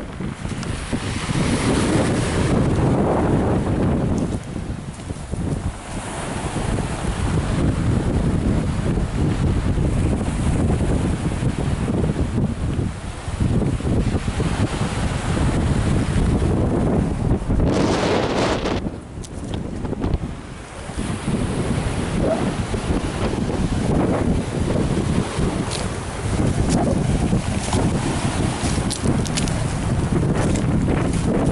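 Strong wind buffeting the camera microphone in rough, rumbling gusts. It eases briefly about two-thirds of the way through.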